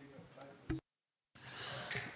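Faint room noise with a few murmured fragments, then the audio drops out completely for about half a second. A breath into a close microphone follows, just before someone speaks.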